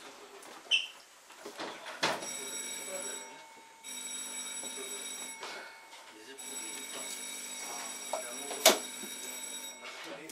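A cable car's electric departure signal bell ringing in three stretches, the last and longest about three seconds. Sharp clicks come about a second in and again near the end.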